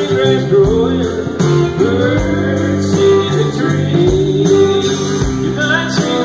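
Live country band playing, with guitars, bass and drums keeping a steady beat and a male voice singing over them.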